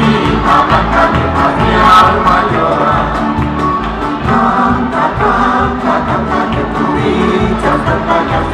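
Live Canarian parranda folk music: accordion, electric bass and strummed guitars and lutes keeping a steady rhythm, with a group of voices singing together.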